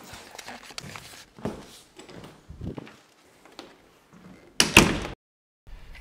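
Scattered soft knocks and rustling indoors, then one loud half-second burst of noise about four and a half seconds in that stops abruptly.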